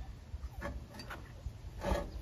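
Faint handling sounds: a few light clicks of metal as the steel shovel parts and a pair of locking pliers are picked up and positioned, over a low steady rumble.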